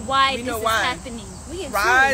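A woman talking in a raised, emphatic voice. A faint, steady, high-pitched whine runs underneath.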